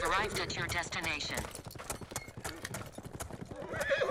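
A horse whinnies, a long wavering call over the first second and a half, with a second, shorter whinny near the end. Hooves clop unevenly in between.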